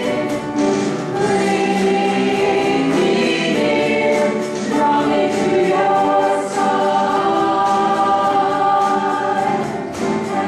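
A small church praise band and a mixed group of singers performing a worship song: several voices singing together in long held notes over electric guitar and electronic drums keeping a steady beat.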